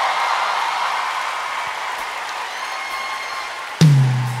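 Concert audience applauding and cheering over soft sustained music, the clapping slowly fading. Near the end the band comes in with a sudden low bass note.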